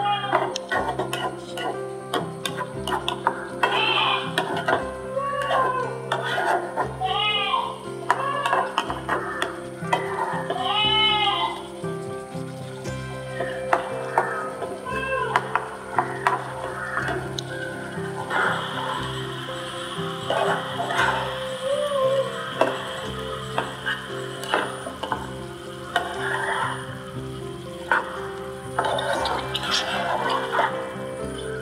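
A silicone spatula stirring and scraping chicken curry in a nonstick frying pan, with scattered clicks of the spatula on the pan, over steady background music. A cat meows several times in the first half.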